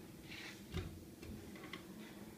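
A soft hiss, a low thump about three quarters of a second in, then a few faint, irregular ticks over a steady low hum.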